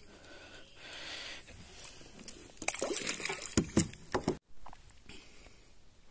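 Water splashing and sloshing against a kayak as a large fish held in a metal lip grip moves in the water, with a cluster of splashes and knocks around the middle. About four seconds in it cuts off abruptly, leaving fainter water noise.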